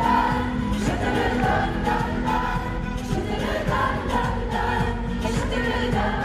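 Live performance of a French pop duet: sung vocals over band accompaniment.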